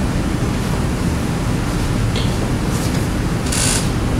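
Steady room noise of a classroom, a low hum with hiss, with a faint click about two seconds in and a short hiss near the end.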